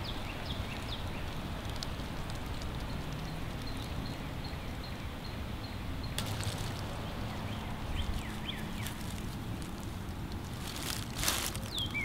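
Outdoor ambience: a steady background hiss with birds chirping now and then, and a few brief rustles, the loudest about six seconds in and again shortly before the end.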